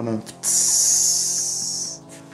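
A steady, high hiss lasting about a second and a half, starting and stopping abruptly: a sizzle standing for water dripping onto hot sauna-stove stones, with faint background music under it.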